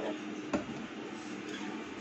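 A glass lid is handled and lifted off a saucepan of soup, with one light clink about half a second in. A low, steady kitchen-appliance hum runs underneath.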